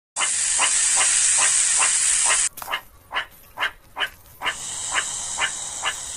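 Cobra hissing loudly and steadily; the hiss cuts off suddenly about two and a half seconds in and returns more faintly about four and a half seconds in. Short, sharp barking calls from a meerkat repeat about twice a second throughout.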